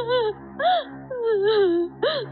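A woman wailing and sobbing in grief, in a series of short cries that rise and fall in pitch, then a longer falling wail. A soft sustained music score plays underneath.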